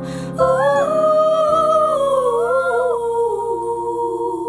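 A wordless female vocal melody, hummed and held with slow pitch glides, over sustained piano chords.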